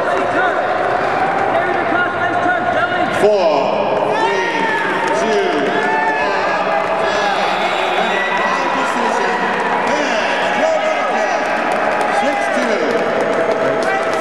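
Many voices in a gym shouting and calling out over one another during the closing seconds of a wrestling bout. A single sharp smack cuts through about three seconds in.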